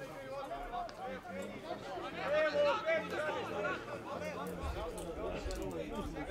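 Men's voices talking and calling out, several overlapping, across an open football pitch.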